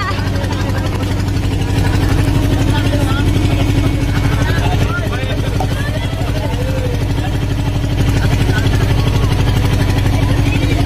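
Engine of a motorized outrigger boat running steadily with a fast, even pulse, while passengers' voices are heard over it.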